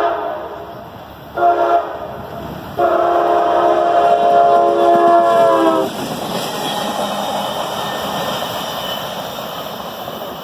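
CSX freight locomotive air horn blowing for a grade crossing: the tail of a long blast dies away, a short blast comes about a second and a half in, then a long blast holds until about six seconds in. The locomotive then passes close, its engine and wheels on the rails making a steady rumble that slowly fades as it moves away.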